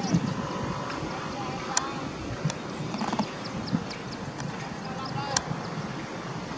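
A small songbird giving short, repeated chirping calls over a low background murmur, with a couple of sharp clicks.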